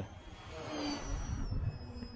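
Sunny Sky A2216 1250 kV brushless motor and propeller of a foam-board RC Spitfire in flight: a hissing whine that swells and then eases, its high tone falling slowly in pitch, over a low rumble of wind on the microphone.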